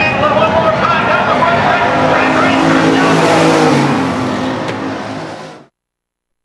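Stock car engines running as the field races past on the oval, rising in pitch a couple of seconds in and loudest around three and a half seconds; the sound cuts off abruptly near the end.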